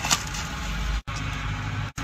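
Steady low rumble with hiss, typical of wind buffeting the microphone outdoors.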